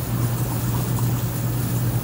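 Outdoor air-conditioner unit running: a steady low hum under an even rushing noise.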